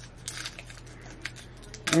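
Gum pack and its wrapper being handled and opened by hand: scattered light crinkles and clicks.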